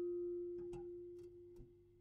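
A single note of a paper-strip music box ringing out and slowly fading, its steel comb tone held steady with higher overtones dying away first. About halfway through come a few faint, quick clicks.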